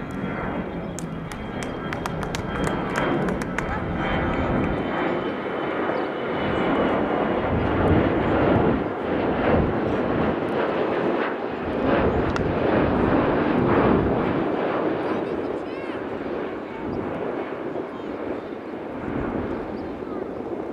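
An aircraft passing overhead, a steady rushing drone that swells through the middle, with voices calling across an open soccer field and a few sharp clicks in the first seconds.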